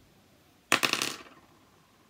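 Metal finger rings clinking against each other: a short rattle of small clicks starting a little under a second in and dying away within about half a second.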